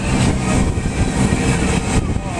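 Motorboat under way at speed: a steady run of engine and water rushing past the hull, with wind buffeting the microphone.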